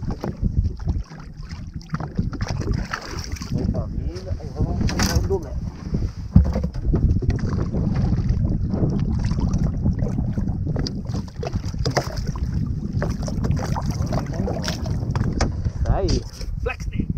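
Steady wind rumble on the microphone and water lapping against the side of a small boat, with a sharp sound about five seconds in and another just after six.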